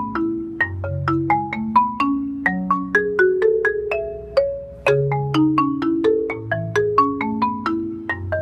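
Adams concert marimba played solo with mallets: a quick, steady run of struck notes, about four or five a second, with low bass notes ringing on beneath the higher ones. The playing thins briefly about four and a half seconds in, then picks up again with a strong low note.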